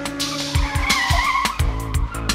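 Electronic music: a held synthesizer tone over pulsing synth bass and crisp electronic drum hits. A wavering, car-like synthesized whine comes in about half a second in and fades out before the end.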